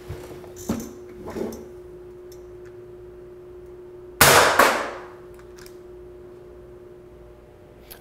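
SIG M17 CO2 pellet pistol fired once about four seconds in: a sharp report, then a second metallic hit about half a second later that rings briefly.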